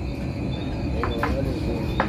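Steady thin high-pitched trill over a low background rumble, with a brief faint voice about a second in.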